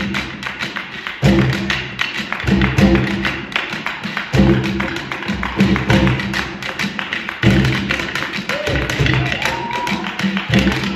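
A live Latin-style percussion ensemble playing: congas and other hand drums keep a busy rhythm over guitar and bass. A short rising tone sounds near the end.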